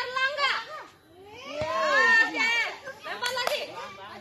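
Young children's high-pitched voices calling out, the words not made out.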